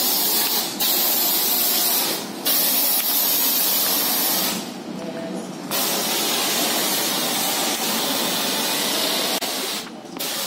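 A pressure-washer spray gun jetting onto a foam-covered motorcycle, a loud steady hiss. It cuts out briefly a few times, longest for about a second near the middle, as the trigger is let go.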